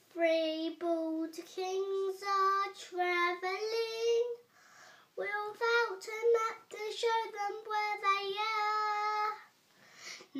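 A young boy singing a Christmas nativity song unaccompanied, in two long phrases with a short breath about halfway through.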